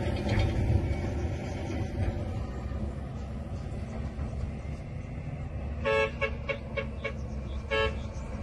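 A steady low engine rumble, with a vehicle horn tooting near the end: one short blast about six seconds in, a quick run of brief toots, then another short blast.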